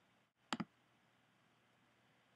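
A single computer pointer click pressing an on-screen button, heard as a quick press-and-release pair of clicks about half a second in, against near-silent room tone.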